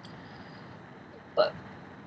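Low room hiss in a pause, broken about one and a half seconds in by a single short mouth or throat sound from a person, like a small hiccup or gulp.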